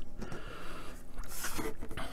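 Quiet room tone with faint handling of small plastic model parts on a cutting mat, and a short soft hiss about one and a half seconds in.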